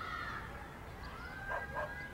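Faint high whining calls from an animal: a short one at the start, then a longer one with a few short yips about one and a half seconds in.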